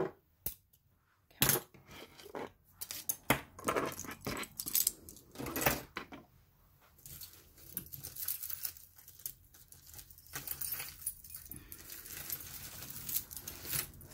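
Metal costume jewelry (watches, chains and a necklace) clinking and jingling as it is gathered up and moved across a wooden tabletop. There are sharp clicks and clatters in the first half, then a steadier, fainter jingle of chains being sorted.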